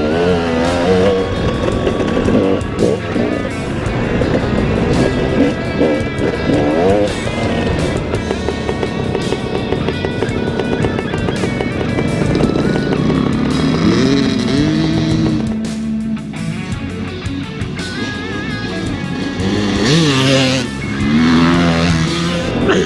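Dirt bike engines revving and changing pitch over background music, with one bike passing close near the end.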